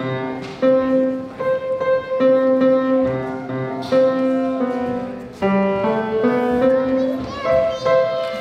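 Grand piano played live: a slow melody of sustained notes, one after another, ringing in the hall.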